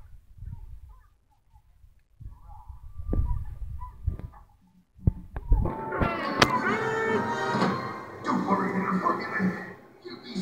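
A film soundtrack played on a television and picked up by a phone: low dull thuds and a few sharp knocks at first, then from about halfway a loud burst of music and effects.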